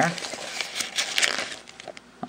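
Paper crinkling and rustling as a crumpled piece of paper is handled and brought to a lighter, fading out near the end.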